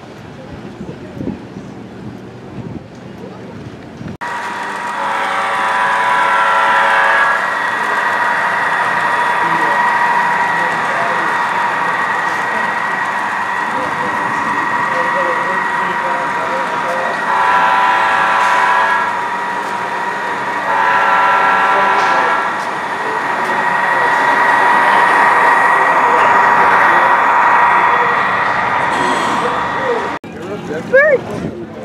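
Model train sound system sounding a diesel horn: a long blast about five seconds in and two shorter ones later on. Between the blasts a steady pitched hum runs on as the model locomotive runs past.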